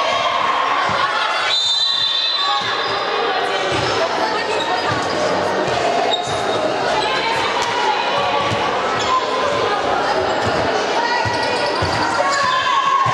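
A basketball bouncing and dribbled on a hardwood gym floor amid players' shouts and voices, echoing in a large hall. A short, high whistle sounds about a second and a half in.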